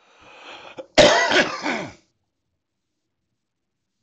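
A man clears his throat with a loud cough about a second in, after a faint breath.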